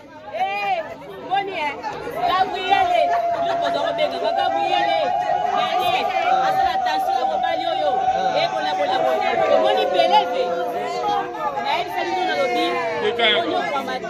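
Lively chatter of several people talking and calling out over one another. Through the middle, one voice holds a long drawn-out call.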